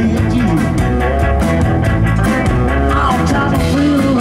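Live rock and roll band playing an instrumental stretch of a song: electric guitars, electric bass and drum kit keeping a steady beat, with guitar notes bending in pitch.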